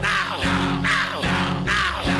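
Loud church worship music with steady sustained keyboard and bass tones. Over it, a voice through a microphone shouts short, falling cries about two or three times a second, as in loud fervent prayer.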